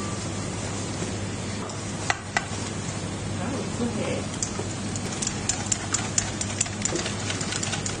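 Wire whisk beating a thick sauce of pastes, peanut butter and eggs in a stainless steel bowl: a wet stirring sound with sharp clicks of the tines against the bowl, sparse at first and coming fast in the second half.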